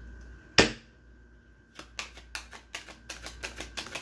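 A single sharp knock about half a second in, then a quickening run of light clicks or taps, over a faint steady high whine.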